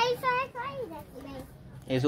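A child's high-pitched voice in a few short, pitch-bending utterances during the first second, then quieter.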